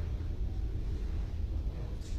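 Uneven low rumble on the microphone of a handheld recording in a hall, with no music playing yet.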